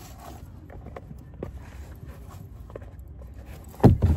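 Sneakers being handled into a mesh drawstring bag: faint rustling and small knocks, then one loud thud near the end as the bagged sneakers are set down on the carpeted car-boot floor.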